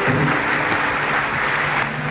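Audience applauding, with a steady low musical note held underneath.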